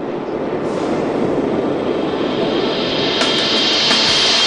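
A steady rushing, rumbling noise that swells and grows brighter and hissier toward the end: an ambient sound-effect rumble.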